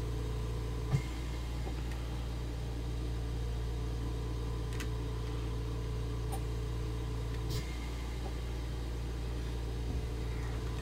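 Steady low hum of room noise, with a faint higher tone that drops out about three-quarters of the way through. Over it, a soft tap about a second in and a couple of faint clicks as small plastic model parts are handled.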